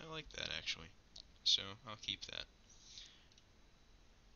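A few soft computer-mouse clicks, with quiet mumbled speech in the first half.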